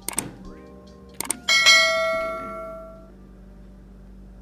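Subscribe-button animation sound effect: mouse clicks near the start and again just after a second, then a notification bell dings about a second and a half in and rings out, fading over a second and a half. Quiet background music runs underneath.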